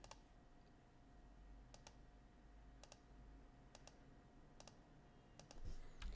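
Faint clicks of a computer mouse, about ten spread unevenly and some in quick pairs, as line points are placed in a CAD sketch, over near silence with a faint steady hum.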